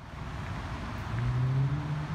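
Outdoor traffic noise: a motor vehicle's engine drone swells and rises slightly in pitch about a second in, over a steady rushing background.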